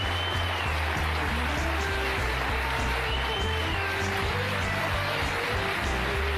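Studio band playing lively play-off music over steady audience applause as a stand-up act ends.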